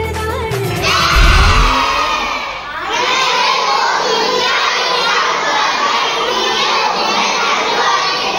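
A large group of children, with some adults, shouting and cheering together in unison, in two loud goes: a short one that starts as the dance music cuts off about a second in, and a longer one from about three seconds on.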